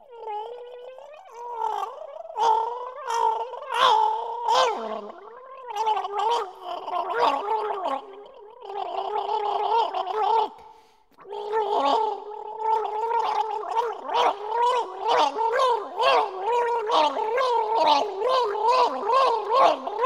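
A person gargling as a musical performance, sounding a wavering pitch through a bubbling, rattling throat. The gargle breaks off briefly about halfway through, then returns with a quicker pulsing.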